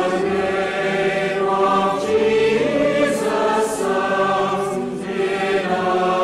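Choral music: a choir singing slow, sustained chords, each held for a second or two before moving on.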